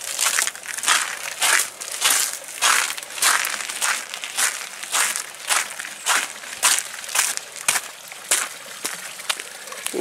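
Footsteps crunching on a thin layer of fresh snow over a wooden deck and steps, a steady walking pace of about two steps a second.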